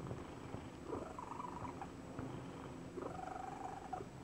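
Domestic cat purring steadily with a wheeze in it, twice rising into a faint whistling tone. The wheezing purr is the sign of a congested, unwell cat.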